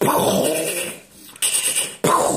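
Children making blast noises with their mouths: two noisy bursts that start sharply and fall away, the second about a second and a half in.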